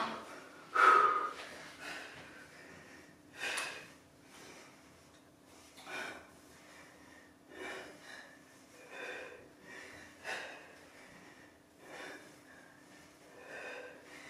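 A woman breathing hard while exercising: short, sharp exhales about every second and a half, in time with her crunches. The first exhale, about a second in, is the loudest.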